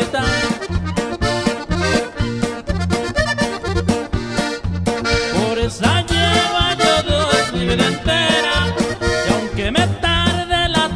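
Instrumental passage of a band song: an accordion plays the melody over a repeating bass line and a drum kit keeping a steady beat.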